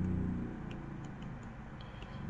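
Faint ticks of a stylus tapping on a graphics tablet while handwriting, over a low background hum.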